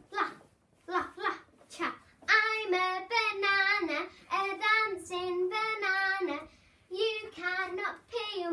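A young girl singing unaccompanied: a few short, clipped syllables, then from about two seconds in long held notes with a wobbling pitch, a brief pause, and more singing near the end.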